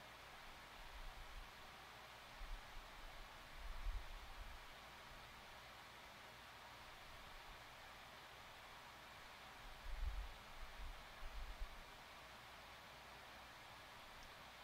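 Very quiet: a steady faint hiss with a few soft, low bumps from hands handling work on a cutting mat, the clearest pair near the start and a cluster about two-thirds of the way in.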